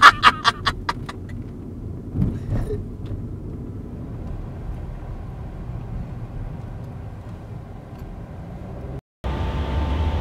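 Steady low road and engine rumble inside a moving car's cabin. A man's quick burst of laughter comes in the first second or so. Near the end the sound cuts out briefly and gives way to music.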